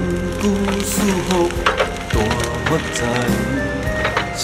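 Background music: a devotional song with a steady accompaniment runs throughout. Several sharp cracks, like wood snapping, come through about one to two seconds in.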